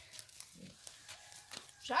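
A near-quiet pause with one brief faint low sound about half a second in and a few faint ticks, then a woman starts speaking right at the end.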